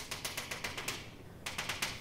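Chalk drawing on a chalkboard: a rapid run of ticking strokes for about a second, a short pause, then a second, shorter run.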